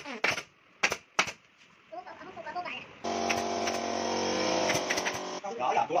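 Pneumatic upholstery staple gun firing staples through fabric into a wooden sofa frame: four sharp shots in the first second and a half. A steady droning sound follows for about two seconds in the middle.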